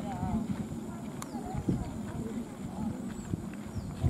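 Footsteps of a group of people walking along a dirt track, an irregular patter of many feet, with voices talking among them. A thin steady high tone sits underneath.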